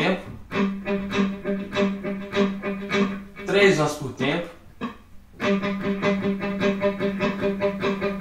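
Electric guitar picking one note over and over at an even rate, two notes to the beat, as a rhythmic subdivision exercise. After a short spoken phrase and a brief pause, the same note is picked again, faster.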